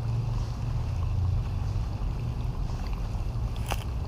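Outdoor background noise: a steady low rumble with a faint haze of noise above it, and one sharp click near the end.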